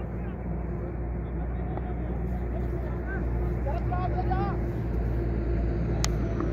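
Faint distant shouts from players on the field, over a steady low rumble with a constant hum underneath.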